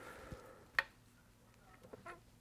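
A quiet room with one short click a little under a second in and a few softer ticks near the end.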